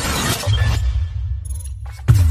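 Cinematic intro sound effects: a glass-shatter crash that dies away over the first second, with a deep bass hum coming in about half a second in. A short hit comes just before the end.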